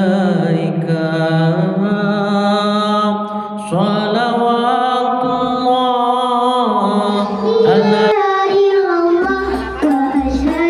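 Voices singing a sholawat, an Arabic devotional song in praise of the Prophet, in long held, wavering notes. Near the end, low frame-drum beats come in under the singing.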